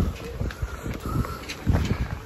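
Wind buffeting the microphone in an uneven low rumble, with a few faint clicks.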